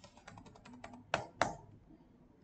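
A rapid run of light clicks and taps from computer input while the teacher works on the digital whiteboard, with two louder taps a little after a second in.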